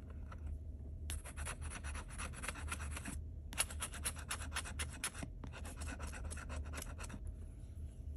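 A metal scratcher tool scraping the coating off a lottery scratch-off ticket in quick, rapid strokes, in three runs of about two seconds each with short pauses between, the first starting about a second in.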